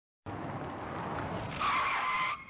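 Tyre-screech sound effect: a noisy skid that gets louder about one and a half seconds in, where a steady squealing tone comes in.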